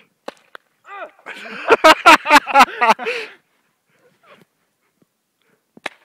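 A man laughing hard in repeated bursts, loud enough to overload the microphone, for about two seconds. A single sharp crack comes near the end.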